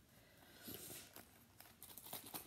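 Near silence with faint handling noise: a few light clicks and rustles as a small Saffiano leather coin pouch is held and moved, most of them in the second half.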